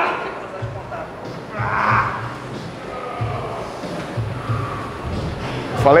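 A man groaning with strain during a heavy leg-press rep, one drawn-out groan about two seconds in, over background music with a low pulsing beat.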